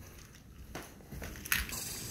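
Faint handling noise from a phone camera being carried, then a sharp click about one and a half seconds in, after which a steady outdoor background hiss.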